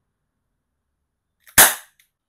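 Smith & Wesson CO2 air revolver firing a single shot: one sharp pop about one and a half seconds in, just after a faint click, with a short ring-out.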